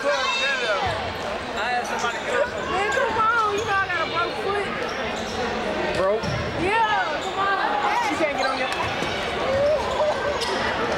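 Basketball game sound in a large gymnasium: a ball bouncing on the hardwood court, mixed with many voices of players and spectators that do not form clear words.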